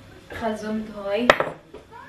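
A single sharp clink of a fork against a dish, a little over a second in, just after a short spoken word.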